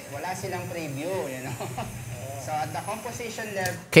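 Speech played back from a video clip: a man talking in Filipino, quieter than the narration around it.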